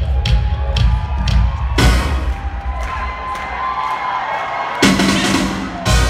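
Live pop concert music in an arena, a heavy bass beat with sharp drum hits about twice a second. About two seconds in the crowd breaks into cheering and screaming as the bass drops away, and near the end a loud hit brings the bass back in.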